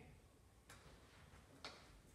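Near silence: room tone with two faint clicks about a second apart.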